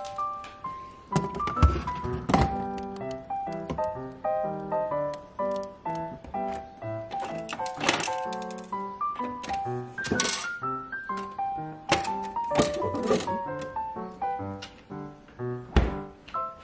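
Light keyboard background music with a moving melody, over several thunks and clacks of a refrigerator's plastic freezer drawers and ice-maker cover being handled, the loudest near the end.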